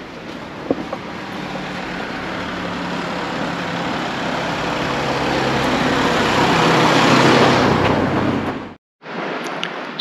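A car's engine and tyres growing gradually louder as it draws near and passes close by, then cutting off suddenly about nine seconds in.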